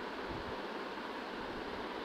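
Steady background hiss of a home voice recording during a pause in speech, with no other sound.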